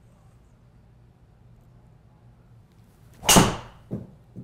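A PING G425 LST driver strikes a teed golf ball about three seconds in: a loud, sharp crack of the clubhead that fades over about half a second. A shorter, duller knock follows just under a second later as the ball hits the simulator's impact screen.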